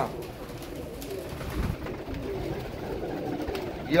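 Caged pigeons cooing.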